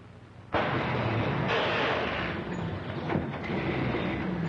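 Old truck's engine running loudly as the truck drives up close. The sound comes in suddenly about half a second in and holds steady after that.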